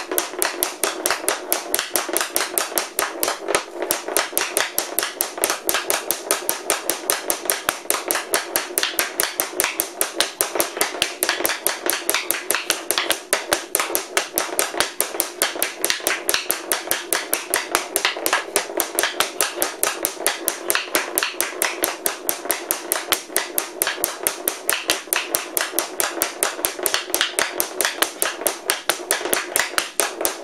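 Small wooden ball knocked rapidly back and forth by a taped hockey stick blade on a stickhandling skill pad: a fast, steady clacking of several hits a second.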